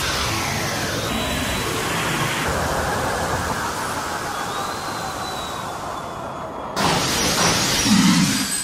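Produced intro sound effects: a falling whoosh fades out in the first second over a steady, dense noise bed, then a sudden loud hit comes near the end.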